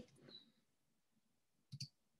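Near silence, then a short double click near the end: a computer mouse click advancing the presentation slide.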